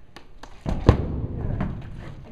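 Horse's hooves thudding on a trailer floor as the horse steps up into the trailer: several hollow thuds, the loudest just under a second in.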